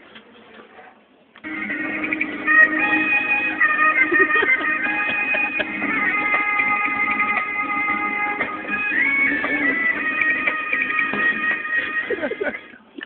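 Buzz Lightyear talking toy in its Spanish mode playing Spanish guitar music through its small built-in speaker, starting about a second and a half in after a brief quiet gap.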